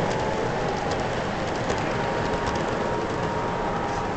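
MTH model train running along the layout's track, heard through a steady din with scattered small clicks.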